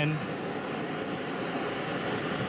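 Handheld canister kitchen torch burning with a steady hiss as its flame caramelizes sugar on top of oatmeal.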